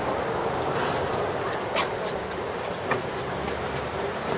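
Steady noise of a busy city street with people around, with two brief, sharper sounds rising above it about two and three seconds in.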